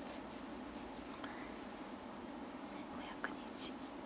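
A cotton pad faintly rubbed and patted against the skin of the face, pressing in skincare lotion. Soft scratchy brushes come in a quick run at the start and twice more about three seconds in, over a steady low hum.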